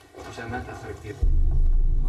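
Quiet room tone, then a loud, steady low rumble cuts in suddenly just over a second in.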